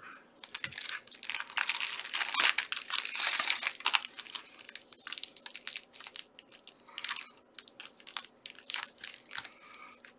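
Foil trading-card pack wrapper crinkling loudly as it is pulled open, for about three and a half seconds, followed by scattered crinkles and clicks as the wrapper and cards are handled.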